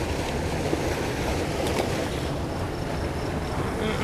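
Steady rush of spillway water churning over rocks.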